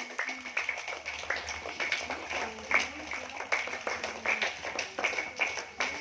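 Applause: a group of people clapping unevenly, the claps scattered and irregular, with a steady faint high tone beneath.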